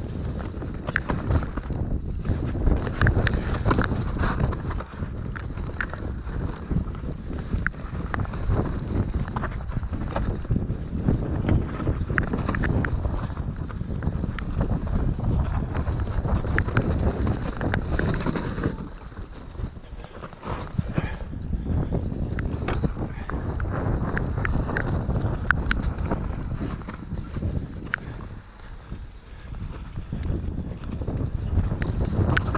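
Mountain bike riding over a rough dirt trail: tyre rumble and a constant run of rattling knocks from the bike over the ground, with wind buffeting the camera microphone. The rattling eases briefly twice, about two-thirds of the way in and near the end.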